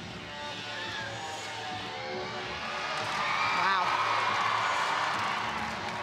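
Floor-exercise routine music playing through the arena speakers, with the crowd cheering and whooping and swelling about halfway through as she finishes a tumbling pass.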